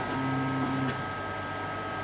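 CNC router's stepper motors whining in a steady low tone as the X axis is jogged from the wireless pendant, stepping slightly in pitch and then stopping about a second in.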